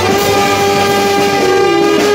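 Brass band of trumpets and sousaphone, backed by an electronic keyboard, holding a long sustained chord.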